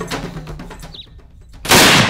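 A single very loud rifle shot from a big-bore hunting rifle, about a second and a half in, cracking out sharply over a quiet moment.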